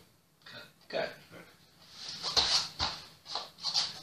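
Two people grappling on foam floor mats: shuffling, a couple of soft thumps and breathy grunts of effort, starting about halfway in.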